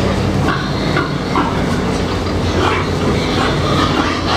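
Loaded carcass cart rolling over a slatted barn floor, its wheels and frame rattling and clattering unevenly, over a steady low hum.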